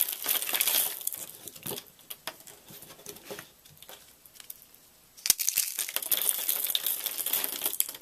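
Brittle soap curls crackling and snapping as they are crushed between the fingers into flakes. The crackling comes in two bursts, one in the first second and a half and a louder one from about five seconds in until near the end, with scattered small clicks between.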